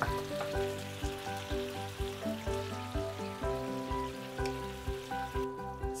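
Rempah spice paste, fish and vegetables frying and sizzling in a frying pan, under background music with a steady beat. The sizzling cuts off shortly before the end.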